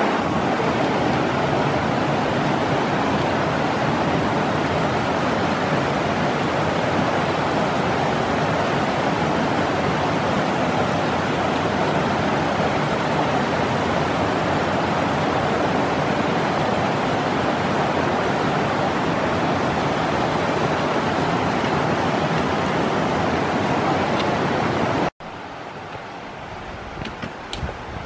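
Mountain creek water rushing over rocks, a steady rush that cuts off suddenly near the end.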